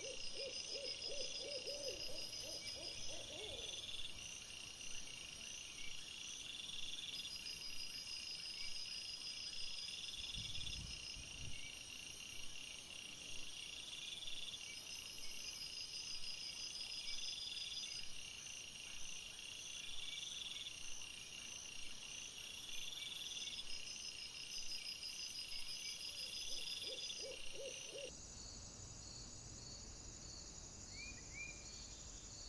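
Woodland ambience of insects chirping in steady, evenly repeated high-pitched pulses. A short run of low hoot-like pulses comes at the start and again near the end, and a brief low rumble comes about ten seconds in.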